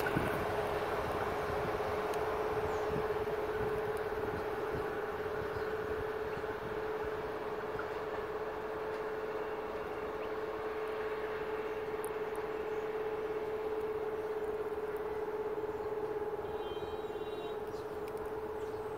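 Diesel passenger train running along the track and moving away, a steady rumble carrying one constant hum that slowly fades.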